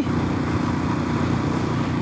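Royal Enfield Classic 500's air-cooled 499 cc single-cylinder engine running steadily at highway cruising speed, around 100 km/h, with a constant rush of wind and road noise.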